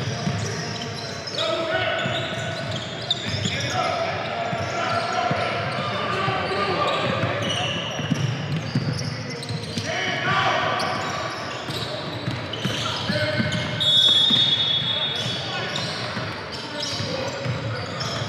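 A basketball being dribbled on a hardwood gym floor, with players and spectators talking and calling out in the echoing hall. A brief high squeak comes about two-thirds of the way through.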